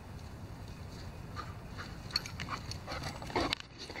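A dog coming up close to the microphone, with scattered light clicks from about halfway through and a short louder noisy burst near the end.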